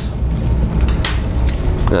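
Halved prawns sizzling in hot olive oil in a frying pan over a steady low rumble, with a single sharp clink about a second in.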